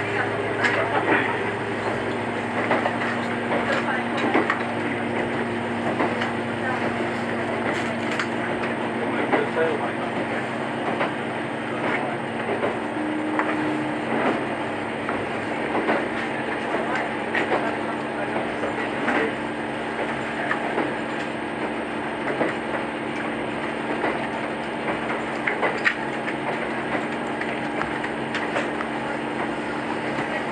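Diesel railcar of the Echigo Tokimeki 'Setsugekka' resort train running at speed, heard from inside: a steady engine and running hum with scattered clicks of the wheels over the rail.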